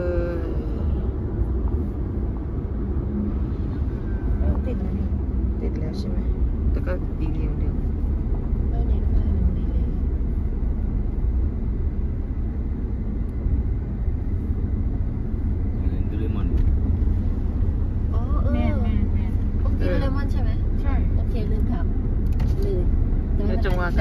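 Steady low rumble of a car's engine and tyres heard from inside the cabin while driving, with voices talking briefly in the second half.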